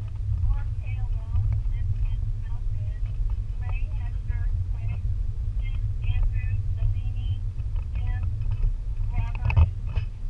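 Steady low rumble with indistinct voices talking over it, and a sharp knock near the end.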